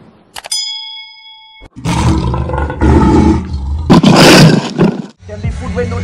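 A mouse click and a bell ding from a subscribe-button animation, then a loud lion-roar sound effect over booming bass, loudest about four seconds in. It cuts off shortly before the end, where rapping begins.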